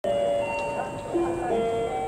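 A simple electronic melody of held notes, stepping from pitch to pitch about once or twice a second, played over stadium public-address loudspeakers.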